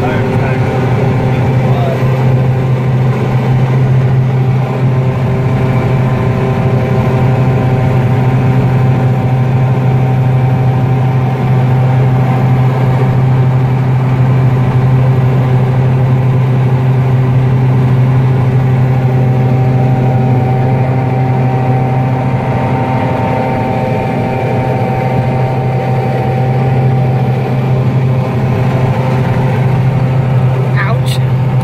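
Combine harvester running steadily while harvesting alfalfa seed, heard from inside the cab: a loud, even machine drone with a strong low hum and a faint steady whine above it.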